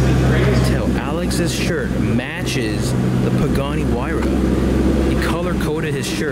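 Pagani Huayra's twin-turbo V12 idling steadily, with people talking in the background.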